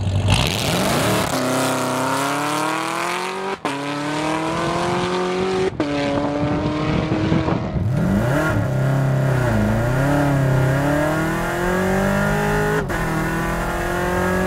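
Supercharged LT4 V8 of a C7 Corvette Z06 at full throttle in a hard launch, the engine note climbing steadily through the gears with three quick upshifts, each a sudden drop in pitch.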